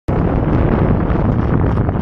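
Wind rumbling on the microphone over a small boat's motor running steadily as the boat moves slowly across choppy water.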